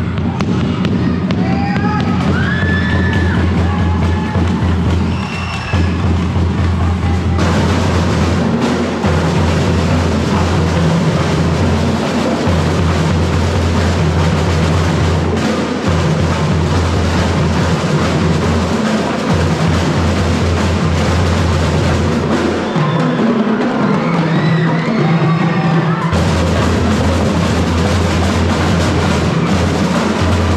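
Drum and lyre band playing: snare and bass drums keeping a loud, steady beat under marimbas. About seven seconds in the band's sound grows fuller and brighter.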